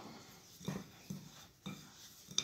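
Faint, soft rubbing strokes of a hand mixing toasted flour and ground spices in a glass bowl, about three strokes half a second apart.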